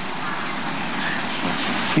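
A steady rushing background noise without distinct events, about as loud as the talk around it, filling a pause in the speech.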